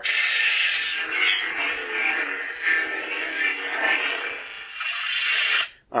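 Electronic lightsaber sound effects from a Proffieboard saber's speaker: the blade igniting at the start and then humming steadily. Near the end there is a brighter swell, and the sound cuts off suddenly.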